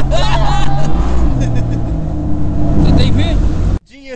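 A jet boat's inboard engine runs hard under way, its note dipping and shifting in pitch. The sound cuts off suddenly just before the end.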